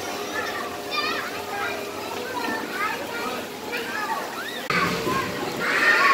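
Children's voices chattering and calling out over splashing, running water from a water play table, growing louder near the end.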